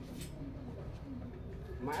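Faint low cooing of a bird: a few short, soft gliding calls over a steady low hum. A man starts to speak just at the end.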